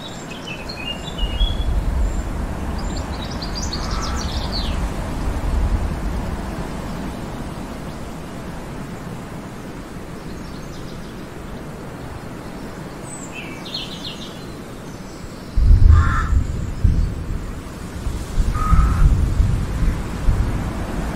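Forest ambience: a steady rushing background with small birds chirping now and then, and two lower bird calls near the end. Low rumbles come and go underneath, loudest in the last few seconds.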